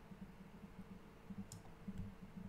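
A computer mouse clicking, one sharp click about one and a half seconds in and a fainter one just before the end, over a faint steady low hum.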